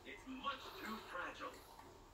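Faint, indistinct speech in the background, with a little music.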